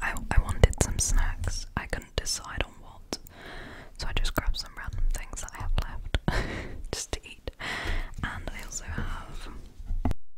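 A woman whispering close to the microphone, with many small sharp clicks between the words.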